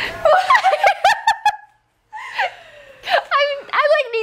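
Women laughing and giggling in short bursts, breaking off suddenly for a moment about halfway before starting up again.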